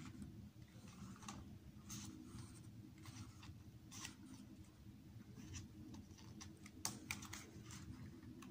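Pages of a K-pop album photobook being turned by hand: faint paper swishes and rustles about once a second, with a quick run of crisper page flicks near the end.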